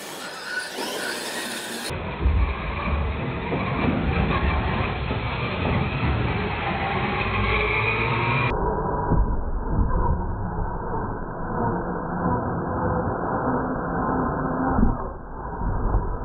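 Two radio-controlled monster trucks racing over a carpeted track with ramps: motor whine rising and falling as they speed up and slow, with knocks of the wheels and chassis hitting the ramps.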